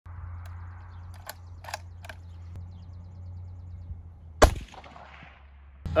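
A single rifle shot about four and a half seconds in, fired from a bench rest, with a short echo after the report.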